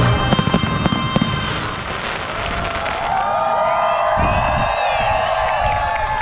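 Fireworks crackling and banging for about the first second and a half, then giving way to a crowd cheering.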